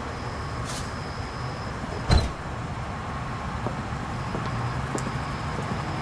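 A car door shuts with one solid thump about two seconds in. Under it runs a steady rumble of outdoor traffic, with a couple of small clicks.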